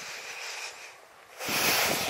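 Wind blowing across the camera microphone as a steady rushing hiss, with a louder gust starting about one and a half seconds in.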